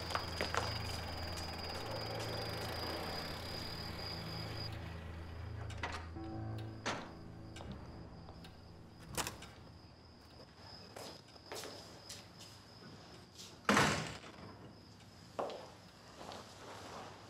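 Soft background music that fades out after about six seconds, followed by scattered knocks and thuds, the loudest a single door thump about two seconds before the end.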